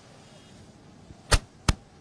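Two sharp clicks, about a third of a second apart, by far the loudest sounds, over faint steady background noise.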